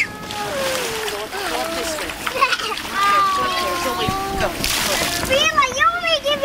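Children sliding down an inflatable water slide into its shallow splash pool, water splashing, with children's voices calling out throughout; a louder burst of splashing near the end.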